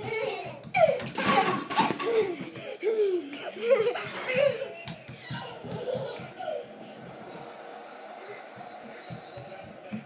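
Young children laughing and squealing in loud bursts while running about, softer after about five seconds.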